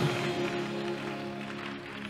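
Soft live instrumental music holding a steady chord of several sustained notes, with a violin bowing among them.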